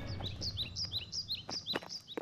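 A bird chirping in a quick series of short, high, falling chirps, about six a second, while the last of an acoustic guitar chord fades away in the first moment.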